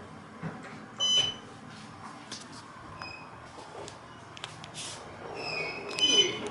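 An elevator car's button beeps once, briefly and high-pitched, about a second in, over a low steady hum in the car. Near the end another set of high electronic tones sounds.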